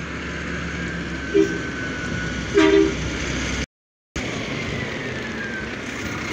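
A recycling truck's engine runs close by, with two short horn toots about one and a half and two and a half seconds in. The sound drops out for a moment just before the four-second mark.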